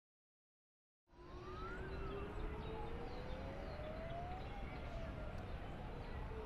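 City ambience: sirens wailing, their pitch slowly rising and falling, over a low steady rumble. It starts suddenly about a second in, out of silence.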